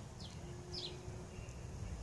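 Faint bird chirps in the background: two short, high notes that slide downward, about half a second apart, over a low outdoor hiss.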